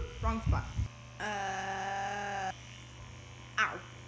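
Handheld percussion massage gun running with a steady low buzz. A girl's voice holds one long steady tone for about a second and a half, starting about a second in, with short vocal sounds just before it.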